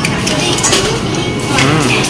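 Metal coins clinking a few times as they are fed into the coin slot of a capsule-toy vending machine, over background music.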